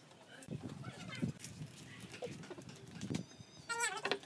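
Faint, indistinct background voices and light handling sounds, then a short, wavering animal call near the end.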